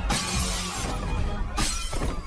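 Glass shattering twice over background music: a long crash at the start and a shorter one near the end.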